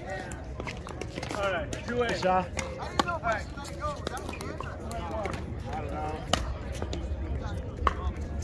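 Players' voices talking between points, with a few scattered sharp pops of pickleball paddles striking balls on the courts, over a steady low wind rumble on the microphone.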